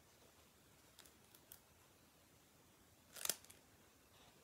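Near silence broken by a few faint ticks and one brief crackle about three seconds in: small handling sounds of adhesive rhinestones being taken off their sheet and pressed onto a paper craft.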